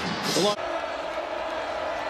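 A man's voice that breaks off abruptly about half a second in, then the steady, even background noise of a stadium crowd heard through a football TV broadcast.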